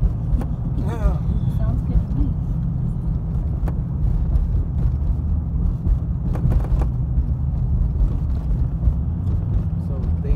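Steady low road and engine rumble heard inside the cabin of a moving car. A faint voice is heard briefly about a second in.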